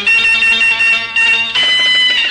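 Instrumental opening of an old Indonesian popular song: the band plays long-held high notes, moving to a new held chord about one and a half seconds in, with no singing yet.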